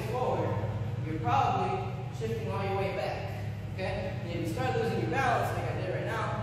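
A voice talking over a steady low hum.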